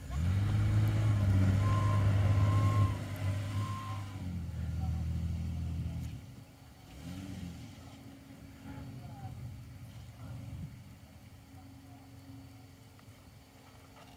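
Ford Explorer Sport Trac's 4.0 V6 engine revving up hard and holding for about three seconds, then running lower and fading out after about six seconds, as the truck backs down the sand dune after failing to climb it.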